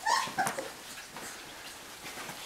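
Golden retriever puppies, about three weeks old, play-fighting, with two short high-pitched yips in the first half second.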